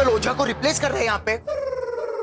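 Man's voice speaking quickly, then breaking into one long, drawn-out whining vowel about one and a half seconds in.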